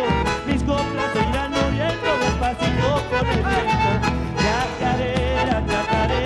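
Argentine folk band playing a chacarera: strummed acoustic guitars, an electric bass, a bandoneón and a bombo legüero drum keeping a steady lilting beat, with a wavering melody line above.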